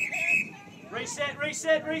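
An umpire's whistle gives one short, steady blast, followed by a man's voice shouting from about a second in.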